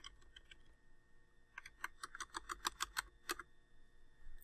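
Computer keyboard keystrokes: a few light clicks early on, then a quick run of keystrokes from about one and a half to three and a half seconds in, as mistyped text is deleted.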